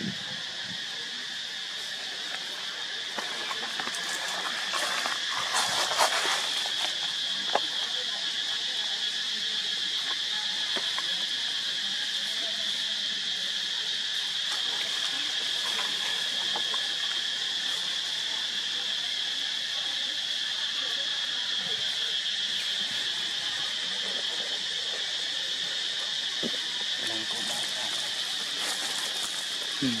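Steady, high-pitched drone of insects, unbroken throughout, with a few faint clicks about six and seven seconds in.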